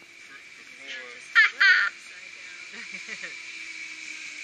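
Steady whine of a zipline trolley running along the steel cable as a rider comes in, its pitch drifting slowly lower. Two short, loud, wavering cries cut in about a second and a half in.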